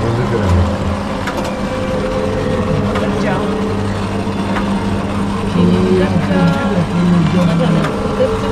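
Indistinct chatter of several people's voices, with no clear words, over a steady low hum.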